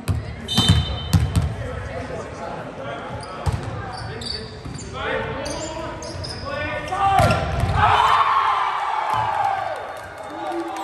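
Volleyball rally: the ball is struck several times with sharp smacks, a cluster of hits in the first second and a half and more later, while players shout calls to one another through the second half.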